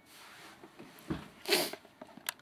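Camera handling noise: clothing brushing close to the microphone, with a dull thump just past halfway and a louder brushing noise soon after.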